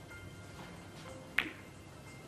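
A single sharp click of a snooker shot on the black, about one and a half seconds in, with a short ring after it, over faint background music.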